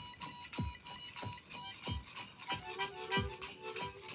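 Harmonica playing long held notes over a steady percussive beat from a shaken hand rattle, about one stroke every 0.6 s. A little past halfway, new lower harmonica notes come in.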